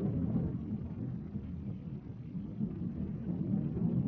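Low, uneven rumble of wind and waves over choppy open water.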